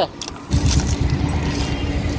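A parking attendant's large ring of car keys jangling as he sorts through it, starting about half a second in, with a low steady hum underneath.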